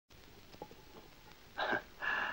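A single short breathy vocal sound from a person, like a gasp or a hiccup, about a second and a half in, over faint room tone with a couple of small clicks.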